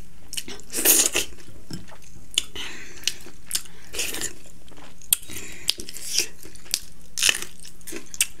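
A person chewing and biting food close to the microphone, with many small wet clicks and a few louder crunchy bites: about a second in, around four seconds and again near seven seconds.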